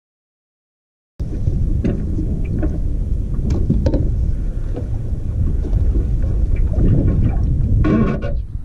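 Silence for about the first second, then wind buffeting an outdoor camera microphone: a loud, steady low rumble, with scattered light knocks and clicks from gear being handled on the boat.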